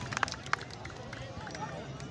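Crowd of spectators murmuring and calling out in the open, with a few sharp clicks in the first half second.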